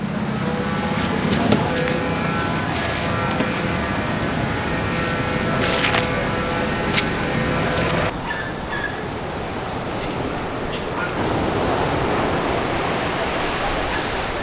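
Motor scooter engine running close by with street noise and a few sharp clicks; about eight seconds in it cuts abruptly to a steady rush of wind and breaking surf.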